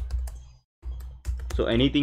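Typing on a computer keyboard: a quick run of key clicks, with a man's voice coming in over it in the second half.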